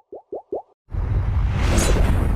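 Animation sound effects: a quick run of short, rising plopping blips, about six a second and growing louder, then about a second in a loud rushing burst with a heavy low rumble.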